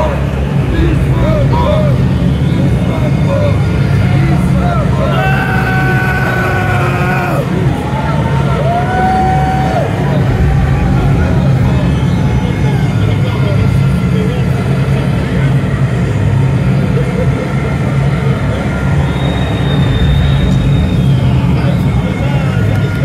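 Death metal band playing live at full volume: heavily distorted guitars and bass with drums in a dense, unbroken low-end wall. A few held, bending lead guitar notes ring out over it near the middle.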